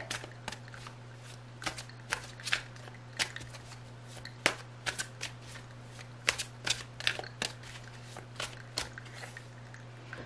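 A tarot deck shuffled by hand, giving a run of irregular soft clicks and slaps of card on card, with a steady low hum underneath.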